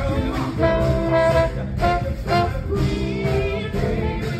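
Live band with a horn section playing Motown soul, with brass chords and punchy rhythmic horn hits over drums and bass, the trombone close to the microphone.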